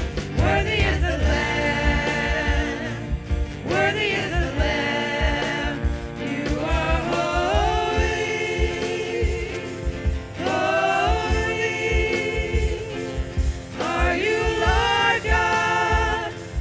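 Live worship band: several women singing a praise song in harmony, in phrases of a few seconds, over acoustic guitar, keyboard and a steady drum beat.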